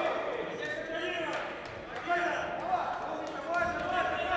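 Raised voices shouting in an arena, with a few dull thuds from the grappling fighters on the cage mat.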